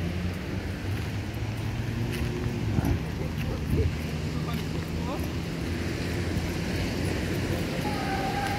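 Outdoor walking ambience: wind on the microphone over a steady low engine hum from passing traffic, with faint snatches of voices from people walking by.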